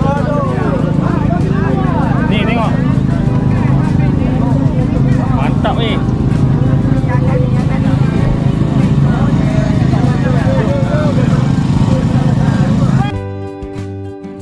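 Outdoor crowd chatter, many voices talking at once over a steady low hum. About a second before the end it cuts abruptly to quieter background music with plucked guitar.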